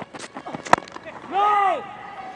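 Cricket ball struck by the bat with a single sharp crack a little under a second in, followed by a man's short shout that rises and falls in pitch.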